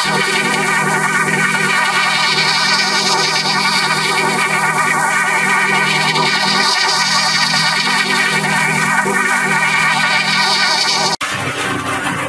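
Heavily processed electronic effect audio: a loud, dense buzzing chord of stacked tones that warble, with a flanger-like sweep rising and falling about every three seconds. It cuts off abruptly about eleven seconds in, and a different, rougher processed sound takes over.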